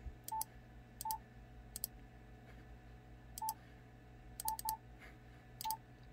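Yaesu FTDX10 transceiver's touchscreen keypad beeping as a frequency is keyed in: about six short, identical beeps, each with a click, at an uneven pace and with two in quick succession near the end.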